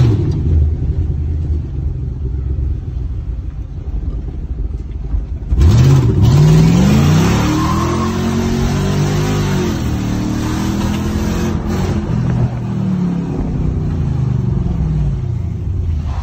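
Mercedes W124 E500's M113 5.0-litre V8, heard from inside the cabin: it runs at moderate revs for about five seconds, then the throttle is opened hard and the revs climb sharply, rising and falling repeatedly under load through the rest.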